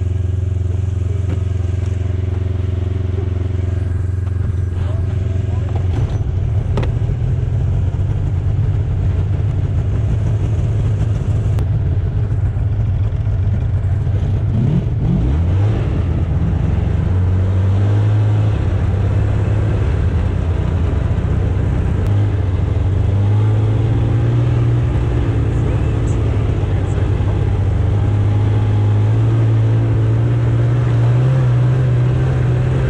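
Arctic Cat 570 snowmobile's two-stroke twin engine running while riding along a trail, a steady drone that rises and dips in pitch about halfway through as the throttle changes, then runs on at a higher, varying pitch.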